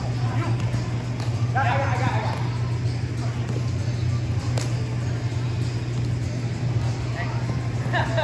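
Roundnet rally in a large hall: a player's shout about two seconds in and a few sharp hits of the ball, the clearest just past the middle, over a steady low hum.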